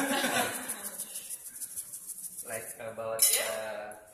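Salt shaken from a small plastic container into a stone mortar, with light clinks of container on stone, strongest in the first half second.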